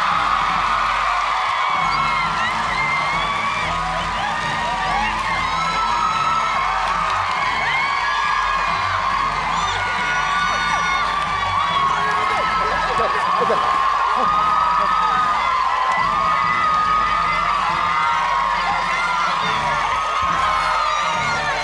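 Studio audience cheering and shrieking, many mostly women's voices at once, over background music with a steady beat.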